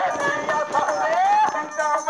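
Folk music: a voice singing a sliding melodic line that rises about a second in, over the regular jingling clicks of a chimta (long iron tongs with metal jingles) and a small hand drum.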